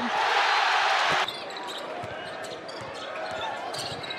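Loud arena crowd noise that cuts off abruptly about a second in. Quieter basketball-arena sound follows, with a ball bouncing on a hardwood court and scattered short knocks.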